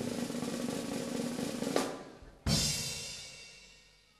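A drum roll, then about two and a half seconds in a single loud crash that rings out and fades, the drum-roll fanfare that introduces a circus act.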